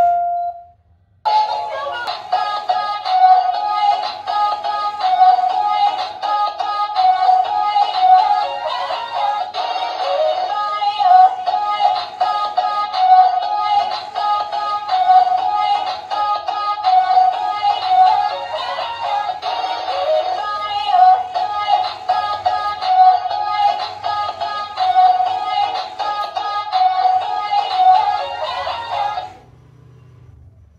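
Dancing cactus toy playing a song through its built-in speaker. The song starts about a second in after a short pause and stops shortly before the end.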